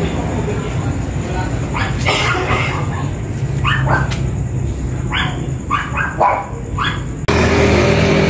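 A dog barking, a run of about ten short barks from about two seconds in, over a steady low hum. Near the end the sound cuts abruptly to a louder steady noise.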